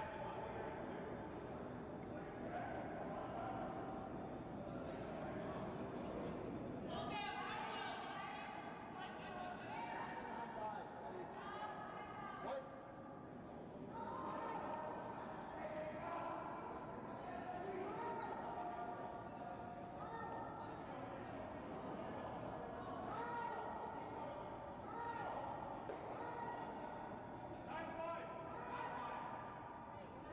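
Indistinct voices of curlers talking among themselves on the ice, under the steady hum of the rink.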